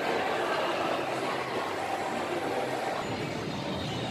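Steady background noise of a large indoor shopping mall: a continuous hum with a faint murmur of distant voices.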